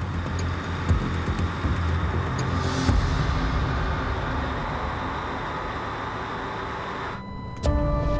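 Engine-room machinery noise on a crab boat: a steady low hum with a few knocks, heard under background music. Near the end the machine noise drops out briefly and tense music with sustained tones takes over.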